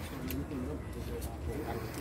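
Indistinct voices of several people talking quietly in the background, with no clear words.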